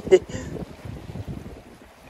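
Wind buffeting the microphone over sea water washing around shoreline rocks, growing quieter toward the end.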